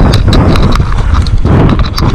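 Mountain bike ridden fast down a rough dirt singletrack: a heavy rumble of tyres over the ground with quick, irregular rattling clicks and knocks from the bike as it bounces over the trail.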